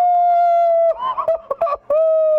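A young man's long whooping cheer, "woo", held at a steady high pitch, then broken, laughing sounds, then a second long "woo" starting near the end.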